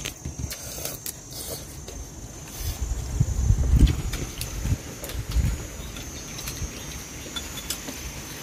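Insects trilling in a steady, high, even tone, with a low rumble swelling about three to four seconds in and a few light clicks of chopsticks against bowls.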